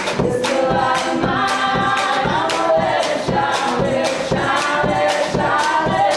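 Live acoustic band playing, with several voices singing together over strummed acoustic guitar and a steady, quick drum beat.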